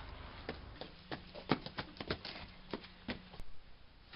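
Quick, irregular footsteps on gravel, about a dozen sharp steps of someone running, with a single sharp click near the end.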